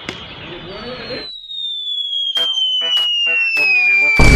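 Cartoon falling-whistle sound effect: a single high whistle gliding steadily down in pitch over about three seconds, with a few sharp clicks beneath it. It starts after the outdoor noise cuts off abruptly about a second in.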